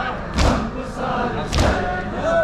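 Crowd of mourners doing matam, beating their chests in unison with a heavy thud about once a second, twice here, over a lament chanted by many voices.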